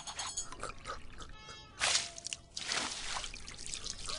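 Cartoon sound effects of a drink being gulped from a cup and dribbling, with soft background music.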